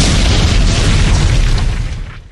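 Loud boom sound effect with a long, noisy rumble that holds steady, then fades out near the end.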